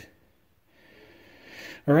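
Brief near silence, then a faint rush of breath that builds for about a second, an intake before speech resumes near the end.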